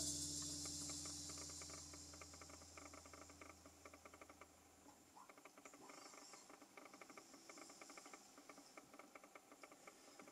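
The last guitar chord of a song on a nylon-string acoustic guitar rings out and fades over the first few seconds, and a low hum cuts off about five seconds in. After that there is near silence with faint, rapid crackling clicks.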